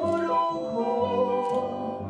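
Argentine tango song with instrumental accompaniment and a woman singing a sustained melodic line over it.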